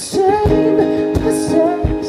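Acoustic guitar strummed slowly, a strum about every half second, while a man sings a drawn-out wordless note.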